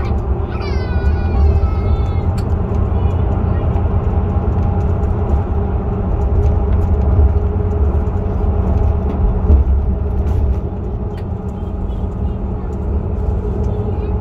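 Interior noise of a motor coach cruising on a highway: a steady low rumble of engine and road with a constant hum and a few small clicks and rattles. A high-pitched voice is heard briefly in the first two seconds.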